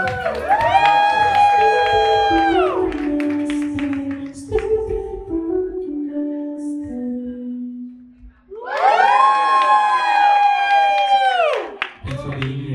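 Live music: a singer holds two long high notes, each a few seconds long and ending in a falling slide. Between them a lower keyboard line steps downward.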